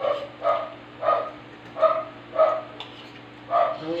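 Dog barking: about six short barks in a loose rhythm, roughly half a second apart, with a longer pause before the last one.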